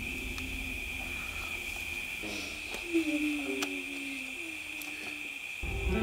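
Steady night-time chirring of crickets, with a soft, low, wavering call about halfway through. Low sustained music notes come in near the end.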